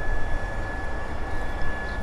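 Low rumbling outdoor background noise with a faint, steady high whine.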